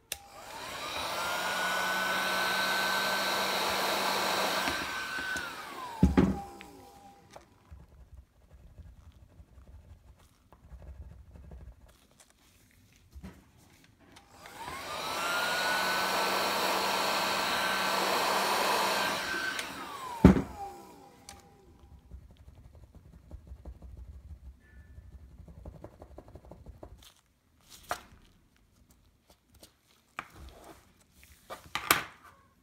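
A handheld heat gun is switched on twice for about five seconds each time, blowing hot air onto a keyboard membrane. Each time its motor whine rises as it spins up, holds steady, and falls away as it spins down, and a sharp click follows. Faint small clicks and rustles come from the membrane being pressed between the runs.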